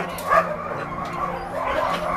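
Shelter puppies yipping and whimpering in short, high calls, with dog barks among them.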